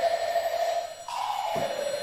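Modern orchestral music for orchestra and pre-recorded tape: a single sustained, wavering pitched line that steps up in pitch about halfway through, with a soft low stroke shortly after.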